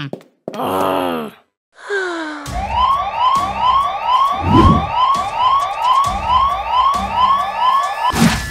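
Alarm siren sounding as a fast run of rising whoops, about two and a half a second, starting about two and a half seconds in. Before it comes a short cartoon vocal groan.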